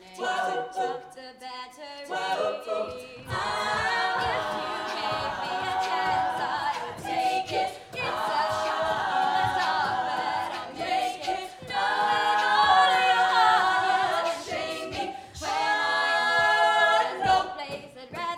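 All-female a cappella group singing a pop arrangement in close harmony, with a vocal percussionist beatboxing a steady beat under the voices.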